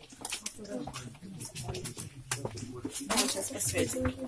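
Indistinct murmur of several people's voices, with irregular footsteps and scuffs on the floor of a stone tunnel.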